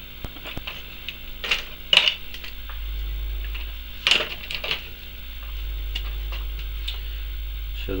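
A few light clicks and knocks of small metal parts and tools being handled on a workbench, spread apart, over a steady low electrical hum.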